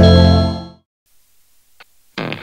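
Closing chord of a TV news intro jingle ringing out and dying away within the first second, followed by near silence.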